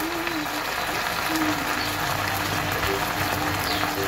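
Pork loins and sliced garlic frying in a pot, a steady sizzle and crackle, with a faint steady low hum underneath.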